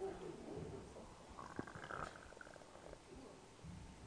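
Faint room tone with low, indistinct murmuring and a single soft click about one and a half seconds in.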